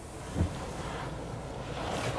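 Steady rushing noise, like wind on the microphone, with a soft low thump about half a second in.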